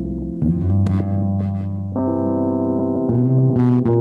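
Live jam on keyboard and bass guitar: held keyboard chords over a low bass line, the harmony changing every second or so, with no drum beat.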